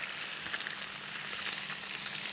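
Butter sizzling in a hot frying pan: a steady crackling hiss.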